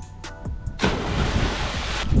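A person plunging feet-first into a canal after a 13-metre bridge jump: a sudden loud splash of water about a second in, hissing for about a second, over faint background music.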